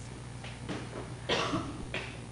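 A single cough a little over a second in, the loudest sound here, among a few soft clicks and rustles over a steady low hum.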